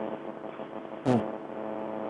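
Steady buzzing hum with many overtones on an open telephone line during a call-in, with one short spoken sound about a second in.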